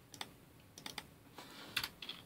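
Computer keyboard typing: a handful of light keystrokes in short clusters, entering a node name.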